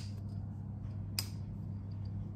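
Small handling clicks and fumbling as a small bottle's cap is twisted and picked at without coming open, with a sharp click at the start and another about a second in, over a steady low hum.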